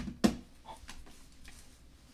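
Hard plastic coin case being handled and set down, giving a sharp click about a quarter second in, followed by a few faint clicks.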